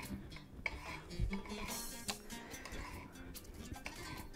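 Chef's knife dicing tomato on a marble cutting board: irregular sharp taps of the blade striking the stone board, with faint background music underneath.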